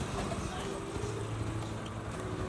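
Street ambience: a steady hum of traffic with faint background voices.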